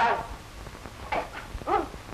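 Two short pained groans from a beaten, injured man, the first falling in pitch and the second rising then falling.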